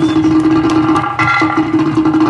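Harmonium holding one steady note, broken briefly about one and a half seconds in, with tabla and drum strokes playing along.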